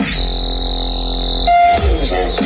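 A loud, steady electronic buzzing tone, a sound effect cut into the dance routine's music mix, holds for about a second and a half. It switches to a brief higher beep, and the hip hop beat comes back in near the end.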